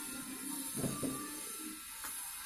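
Background music with held notes, and a couple of soft low knocks about a second in.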